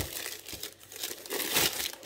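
Thin plastic packaging bag crinkling and rustling in irregular bursts as it is handled and pulled off a boxed unit.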